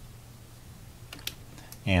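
Quiet room tone with a few faint, sharp clicks about a second in, from the computer being worked while the chess software runs. A word of speech starts right at the end.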